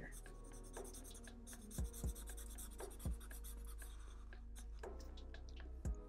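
Black felt-tip marker rubbing and scratching on paper while inking in a dark area, with a few soft low thumps.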